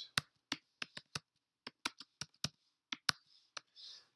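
Computer keyboard being typed on: about a dozen quick, sharp key clicks in an uneven rhythm, with a brief pause between two words.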